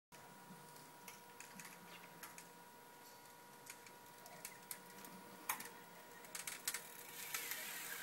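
Faint scattered clicks and ticks from a road bicycle as it is ridden up, coming more often and louder near the end as the bike draws close, over a faint steady hum.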